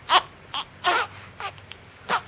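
Newborn baby fussing with four short, broken cries.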